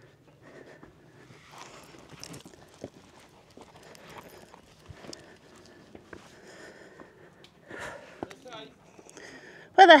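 Footsteps scuffing and clicking over loose rock and stones on a steep path down into a gorge, with faint breathing, then a loud shouted call near the end.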